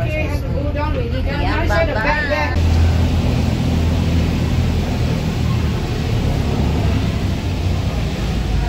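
Steady low rumble of a cable car terminal's machinery as gondolas run through the boarding station, after a voice that lasts about the first two seconds.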